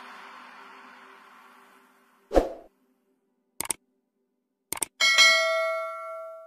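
The song fades out, then a subscribe-button sound effect plays: a short thump, two quick double clicks, and a bell ding about five seconds in that rings on and slowly dies away.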